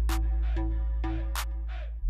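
Electronic background music with a steady deep bass and two sharp drum hits.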